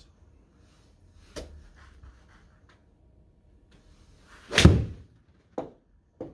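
Full iron shot off a hitting mat with an Orka RS10 CB iron: a brief swish rising into a loud, sharp strike of club on ball and mat about four and a half seconds in, then a shorter knock about a second later. A light click comes about a second and a half in.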